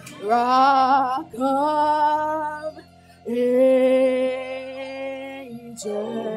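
A woman singing a worship song into a microphone in three phrases. The first wavers with vibrato, and the last is a long held note of about two seconds, over a steady low accompaniment.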